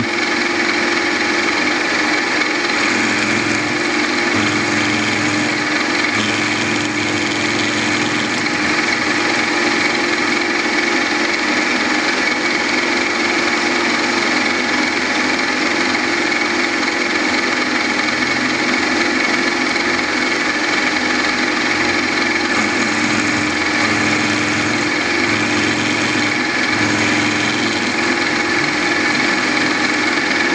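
Small milling machine running steadily, its spindle driving a homemade hardened drill-rod cutter that cuts the teeth of a small 14-tooth helical gear.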